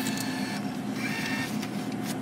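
Ticket vending machine's bill acceptor whirring as it draws in and stacks a banknote. The whir changes about half a second in, with a brief higher whine about a second in and a few clicks.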